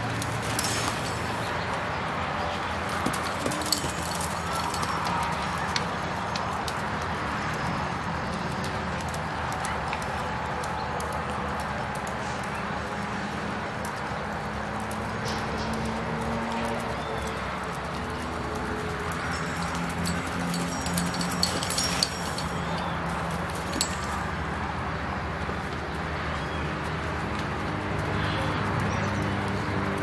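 Hoofbeats of a Criollo horse working a reining pattern on arena sand, over a steady background haze, with a few sharper knocks scattered through.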